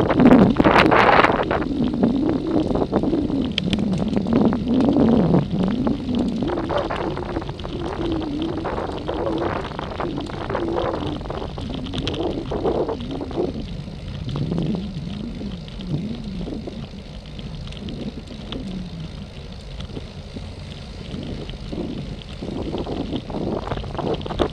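Wind buffeting the microphone of a camera mounted on a moving road bike, an uneven rumble that is stronger in the first half, eases for a while and picks up again near the end.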